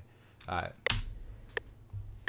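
A short spoken word, then a loud sharp click about a second in and a fainter click about two-thirds of a second later.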